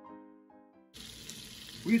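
Sustained musical tones for about the first second, then butter sizzling in a frying pan, a steady hiss that starts suddenly about a second in. A voice begins right at the end.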